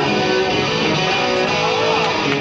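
Electric guitar played live through an amplifier, holding sustained, ringing notes as a rock band starts a song.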